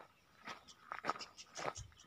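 Footsteps crunching on dry soil and twigs: a handful of short, irregular crunches about half a second apart, the louder ones past the middle.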